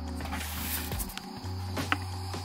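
Background music with a steady low bass note that drops out briefly around the middle, and a single light click near the end.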